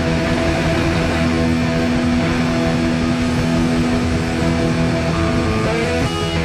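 A punk rock band playing live, with loud electric guitars to the fore. The band plays without a break, with a change of chords near the end.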